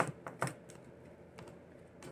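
Tarot cards being handled and laid down: a few light clicks and taps of card against card and table, clustered in the first half second, with one more about a second and a half in.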